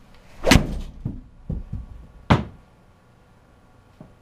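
An Adams MB Pro Black 6-iron strikes a Callaway practice ball off a hitting mat about half a second in, with the ball smacking straight into the simulator's impact screen. A few softer thuds follow, then a second sharp knock a little over two seconds in.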